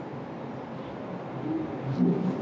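Steady low room hum with faint, muffled whimpering that swells near the end, from a tearful patient as her nasal splint is being removed.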